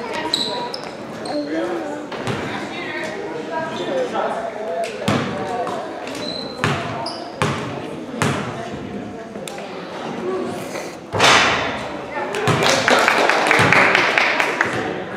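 Gym game sound: a basketball bounced several times on the hardwood floor, with sneaker squeaks, over steady chatter from players and spectators in a large echoing hall. Near the end the crowd noise swells suddenly and loudly.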